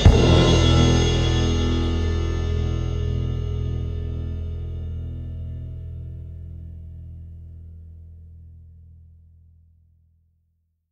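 The final chord of a rock song, hit together with the drums and cymbal, ringing out and slowly fading away over about ten seconds, the lowest notes lasting longest.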